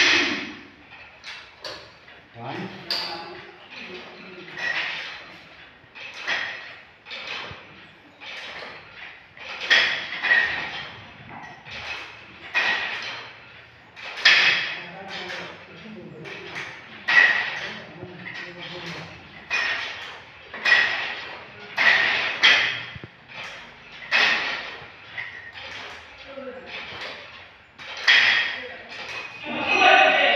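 Weight stack of a leg-extension machine clanking with a metallic ping about every two seconds, once per repetition.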